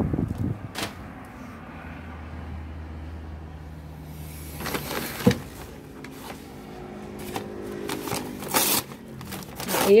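Paper packing being handled and pulled out of a cardboard box, rustling and crinkling, loudest about five seconds in and again near the end, over a steady low hum.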